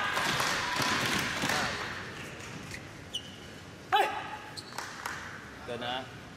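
Arena crowd noise dies away over the first two seconds. Then comes a badminton rally: sharp racket strikes on the shuttlecock and short shoe squeaks on the court, the loudest about four seconds in.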